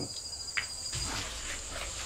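Crickets trilling: a high, fast, pulsing trill with a higher insect hiss above it, both fading out a little over a second in. A brief click comes just after half a second.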